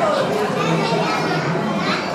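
Children's voices and untranscribed chatter in a large, busy dining room.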